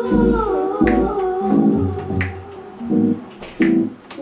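A slow vocal song: a voice holds and bends a long sung line over a beat of deep bass pulses, with a sharp finger-snap hit on the backbeat twice.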